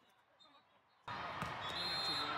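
Near silence for about the first second, then the echoing noise of a volleyball match in a large hall cuts back in suddenly: voices from players and crowd, and the sharp smack of a volleyball being hit.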